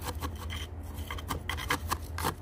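A thin metal repotting tool scraping and poking through gravel in a glazed ceramic pot: short, uneven gritty scrapes, several a second.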